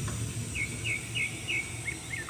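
A small bird chirping, four short chirps in quick succession and then two more, over a steady low hum.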